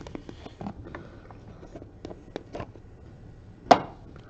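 Small clicks, taps and scrapes of a small cardboard card box being handled and slid open, with one sharper, louder tap near the end.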